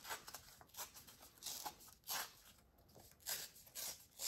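Folded printer-paper pages being torn by hand: a string of short papery rips and rustles.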